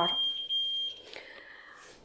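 A steady, high-pitched electronic tone, held for about a second and a half, that cuts off about a second in.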